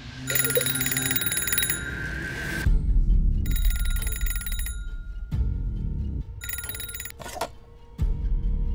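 Old electromechanical telephone bell ringing three times, each ring about a second long and separated by a pause of about two seconds, over a low rumbling musical score.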